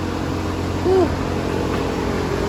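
Steady mechanical hum made of several constant low tones over a faint hiss, with a short 'ooh' from a woman about a second in.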